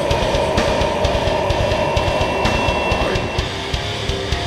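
Hardcore metal band playing live: distorted electric guitars and a rapid drum kit, with one long held note over the drums for the first three seconds or so.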